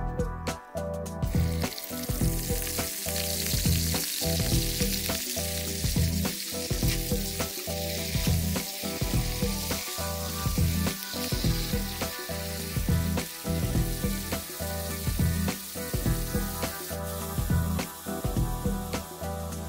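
Pieces of small bird meat frying in hot oil in an aluminium pan, a steady sizzle that starts about a second in, when the meat goes into the oil. Background music with a steady beat runs underneath.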